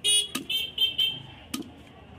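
A vehicle horn toots several short times in quick succession in the first second, while a heavy cleaver knocks twice on a wooden chopping block as fish is cut.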